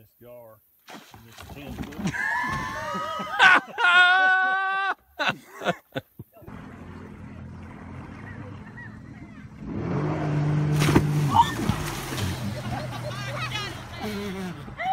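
Excited voices calling out, with one long high-pitched cry, then a jet ski's engine running steadily as it tows an inflatable tube away across the water, swelling a few seconds later.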